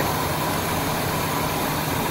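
Chevy 454 big-block V8 idling steadily. It runs a little smoother now that its spark plug wires are in the correct firing order, after running rough on swapped wires.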